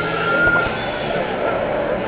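Steady din of a crowded boardwalk amusement pier, with people's voices blended into the noise of ride machinery. A faint thin whine sits over it and fades about a second and a half in.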